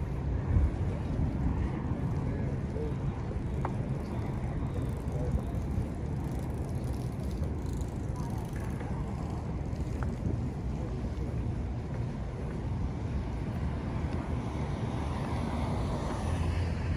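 Steady low street ambience: wind rumbling on the microphone over distant traffic, with a couple of faint clicks.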